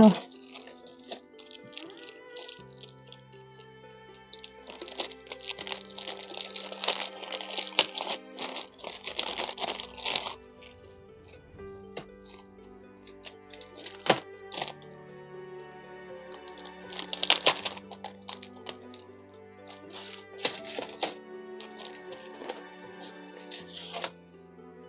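Crinkling and rustling of a clear plastic sleeve being handled, in irregular bursts with the longest a few seconds in and another later on. Soft background music with sustained notes plays under it.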